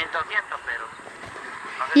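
Faint talking in the first second, then a quiet outdoor lull; a woman's speech starts again near the end.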